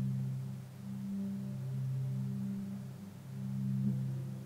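Low ambient music drone: two steady low tones held together, swelling and fading every couple of seconds.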